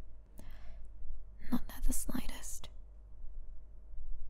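A woman whispering a few soft words.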